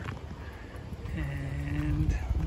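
A man's voice holding one low, drawn-out 'uhh' for about a second in the second half, over steady low rumble of wind and riding noise from a moving bicycle.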